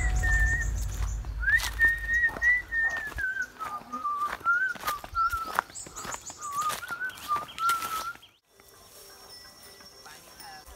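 A tune whistled on one pure, wavering note-line, over the crunch of footsteps on dry fallen leaves. About eight seconds in, both cut off sharply, leaving only a faint background.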